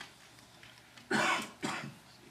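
A person coughing twice in quick succession about a second in, the first cough longer and louder than the second.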